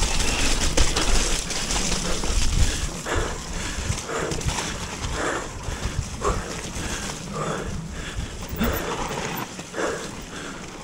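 Mountain biker breathing hard in short, rhythmic gasps, one or two a second, while riding fast, over a steady low rumble of tyres on the muddy trail and wind on the microphone.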